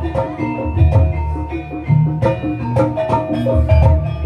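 Javanese gamelan music for an ebeg dance: bronze metallophones and kettle gongs play a busy melody of struck notes over low kendang hand-drum strokes.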